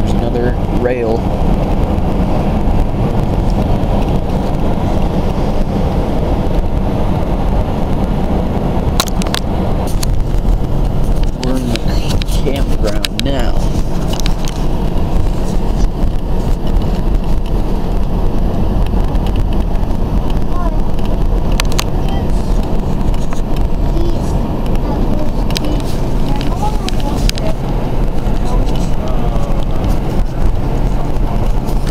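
Steady road noise heard from inside a moving car's cabin: a low rumble of engine and tyres, with a few scattered sharp clicks.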